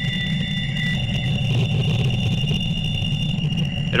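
Audio rendition of the 1977 Wow! radio signal played back: a deep rumbling, rattling noise with steady high-pitched squeaking whistle tones above it. One of the tones stops about a second in.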